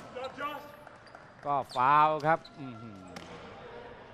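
A basketball bouncing on the court amid quiet arena noise during a stoppage for a foul.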